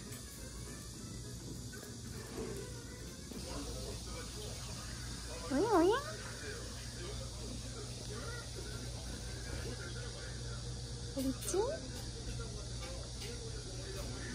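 A cat meowing, one loud call about halfway through that bends up and down in pitch and a shorter rising call later, begging for more of a lickable treat.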